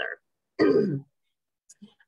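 A woman clearing her throat once, a short sound of about half a second that falls in pitch, during a head cold. A couple of faint clicks of breath follow near the end.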